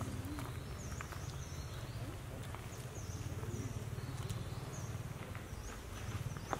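Outdoor forest ambience: a steady low rumble with short, high chirps repeating about once a second, and a few faint taps.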